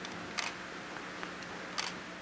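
Two short, sharp clicks about a second and a half apart, over a faint steady hum in a quiet, reverberant church.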